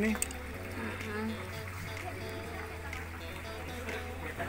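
Faint voices talking in the background over a low steady hum.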